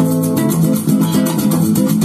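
Guitar music with a bass line playing from a Sanyo M-X960K radio-cassette boombox with a built-in super woofer.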